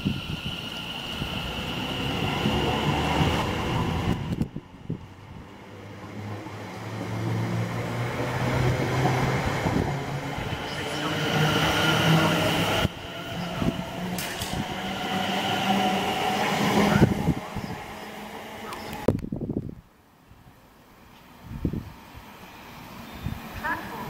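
Electric multiple-unit passenger train running past close by along the platform: wheel-on-rail rumble with steady humming and whining tones from its running gear. The sound swells and ebbs, then drops away sharply about nineteen seconds in as the last carriage clears.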